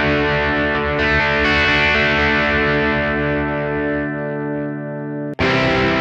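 Electric guitar through a Blackstar Amplug 2 Fly headphone amp on its Crunch channel, with mild overdrive and no effects. A strummed chord rings out and fades, then cuts off just past five seconds. A new strummed passage starts at once with the ISF tone control turned up to 10.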